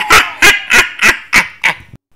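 A run of six short honk-like calls, about three a second, getting fainter toward the end.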